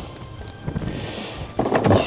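Light background music under the rustle and clatter of plastic model-kit sprues and their clear plastic bags being handled, with a few soft knocks in the middle.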